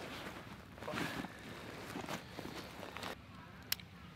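Rustling and scraping of a camera backpack as a travel tripod is worked out of it, dying away about three seconds in, then a single sharp click near the end.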